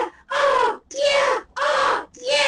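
A voice whooping in a rapid chain of loud, drawn-out 'ooh' calls, about two a second.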